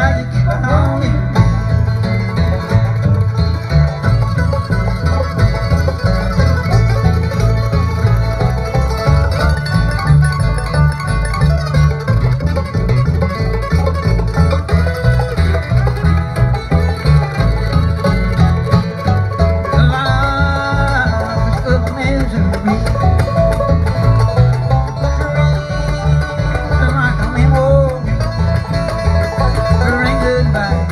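A bluegrass band playing live through a PA: banjo, acoustic guitar and upright bass, with a steady bass beat underneath.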